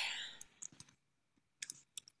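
A few faint, short computer clicks in two small clusters, about half a second in and again near the end.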